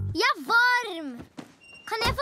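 A young girl's long, drawn-out whine, rising and then falling in pitch for about a second, the sound of a child complaining. A brief faint high beep comes near the end.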